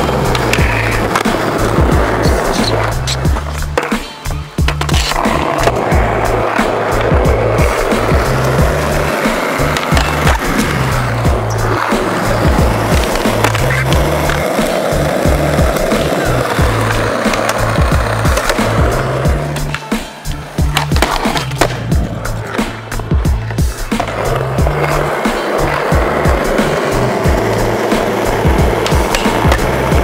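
Skateboard wheels rolling on concrete, with many sharp clacks as boards are popped and landed, under background music with a repeating bass line.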